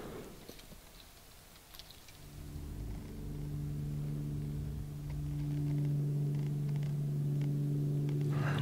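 A steady low hum with even overtones fades in about two seconds in and holds at one pitch without wavering.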